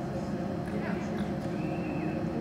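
Indoor arena background: a steady murmur of distant voices over a hum, with a few short high chirps near the middle.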